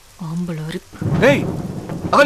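A short spoken phrase, then from about a second in a louder, raised voice, over steady rain.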